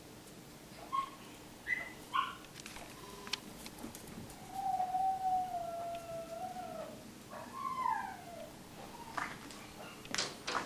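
A dog shut in the garage whining and howling to be let in: a few short yelps, then a long whine held for about two seconds, then a falling whine near the end.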